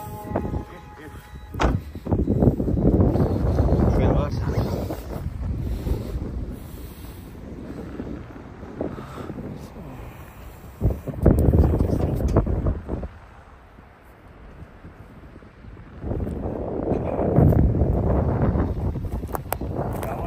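Wind gusting across a phone microphone: loud, low, blustery noise that comes and goes in several gusts, the strongest about eleven seconds in.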